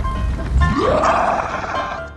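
Background music with an added creature sound effect: about half a second in, a sound glides up in pitch and then spreads into a rough, dense noise lasting about a second.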